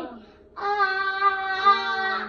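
A young child's voice in a long, drawn-out "aaah" wail while his teeth are brushed. A falling cry trails off at the very start, then a steady held wail begins about half a second in.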